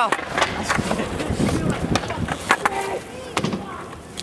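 Skateboard wheels rolling on concrete, with several sharp clacks of the board.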